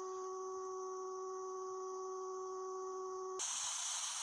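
Analog TV station sign-off test tone over colour bars: one steady, unchanging tone. About three and a half seconds in it cuts off suddenly and gives way to the hiss of off-air TV static.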